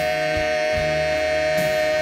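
Gospel song with instrumental accompaniment: singers hold one long note, over a steady bass line.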